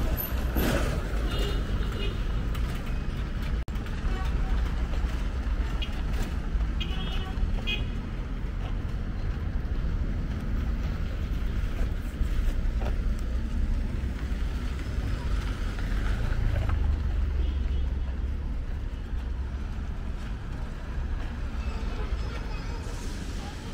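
Street traffic heard while walking: cars and a pickup passing over a steady low rumble.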